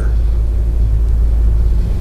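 A steady low hum and rumble in the studio audio, with no change through the pause.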